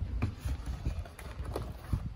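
Cardboard hamper box being slid down over a tray of plastic cookie containers, with a string of irregular light knocks and taps as it is handled into place.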